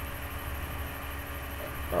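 Steady low electrical hum with faint hiss: room tone, with no distinct handling sounds.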